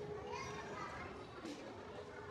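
Indistinct chatter of voices in a large shop, among them a child's voice rising in pitch, over a steady background hum. A brief click sounds about one and a half seconds in.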